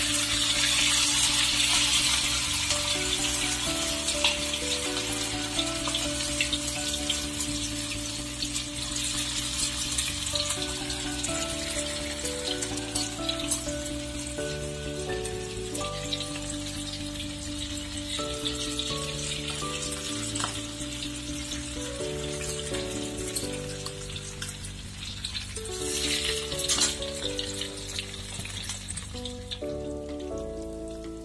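Tofu fritters (perkedel tahu) sizzling as they deep-fry in hot oil in a wok, louder at the start and again briefly near the end. Background music with a run of changing notes plays under the sizzle.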